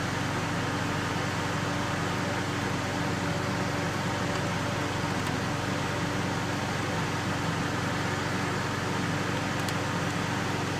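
Steady mechanical hum and rush of air, like a ventilation fan running, with a low droning tone under it. A couple of faint ticks come about halfway and near the end as a small screwdriver works the lid screws of a 2.5-inch laptop hard drive.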